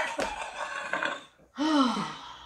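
A woman laughing with her head thrown back, the laughter trailing off about a second in, followed by a short voiced sigh near the end.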